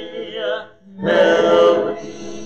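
Congregation singing a hymn a cappella, unaccompanied voices in unison and harmony. The singing breaks briefly between phrases about three-quarters of a second in, then comes back on a loud held note.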